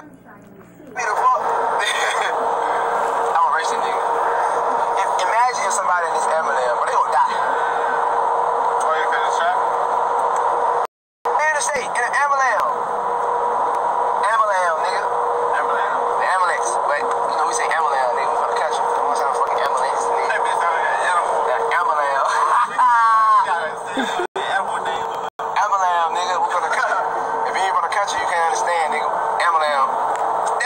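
A man's voice going on almost without a break inside a car, over a steady hum; the sound drops out for a moment about eleven seconds in.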